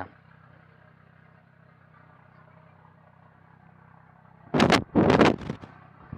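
Low steady hum, then about four and a half seconds in, a loud, rough vehicle engine noise lasting about a second.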